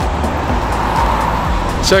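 Background electronic music with a soft beat under a steady rushing noise of road traffic, strongest about halfway through; a man's voice begins right at the end.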